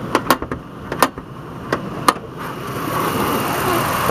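Sharp clicks and knocks of an SUV's hood latch and safety catch being released and the hood lifted, about six in the first two seconds. A steady noise then builds toward the end.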